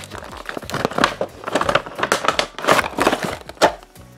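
Clear plastic blister packaging of a boxed toy figure crinkling and crackling as it is pulled from its cardboard box and handled, in a run of irregular crackles and sharp snaps.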